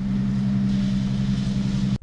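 Fire tanker truck's engine and pump running with a steady hum, with the hiss of its hose jets spraying, the hiss growing stronger about half a second in.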